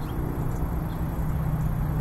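A steady low rumble with a faint hum under it, and no distinct event.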